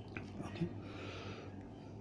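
A lecturer's voice in a pause: a faint, quiet "okay" near the start, then a soft breath, over a steady low electrical hum.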